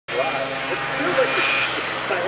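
Several 600-class race snowmobiles running steadily through a turn, with people's voices talking over the engine noise.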